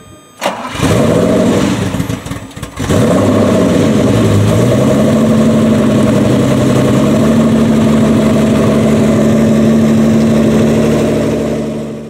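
Lamborghini Countach V12 cranked and starting about half a second in, revving unevenly with its pitch rising and falling, dropping off briefly around two seconds before picking up again, then settling into a steady fast idle that fades out near the end.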